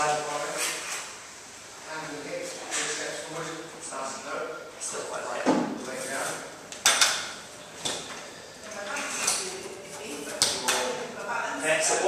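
Rubber bumper plates being slid onto the steel sleeves of a barbell, with a handful of sharp clanks of plate against bar, the loudest about halfway through.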